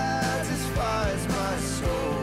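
Contemporary worship song with a band: a sung melody, with one long held note near the start, over instruments and a steady drum beat.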